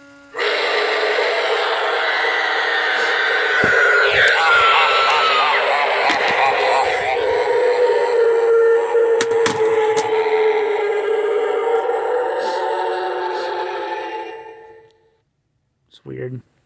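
A Halloween pop-up zombie animatronic plays its recorded sound track through its small built-in speaker: a zombie voice over spooky music. It starts suddenly, runs for about fourteen seconds and fades out, with a few knocks from the moving figure along the way.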